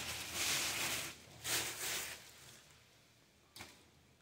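Plastic sack rustling in a few short bursts as it is pulled out of a bucket of dry horse manure, with one faint click near the end.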